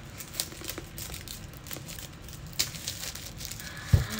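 Clear plastic bag crinkling and crackling as it is pulled off a book, with a single thump near the end.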